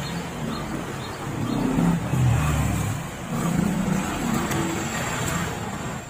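A motor vehicle engine running close by, swelling louder twice as it revs, over the background of a busy market.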